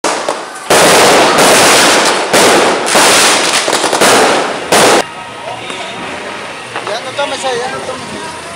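Fireworks going off in a loud, near-continuous barrage of several long runs that stops abruptly about five seconds in, followed by people's voices.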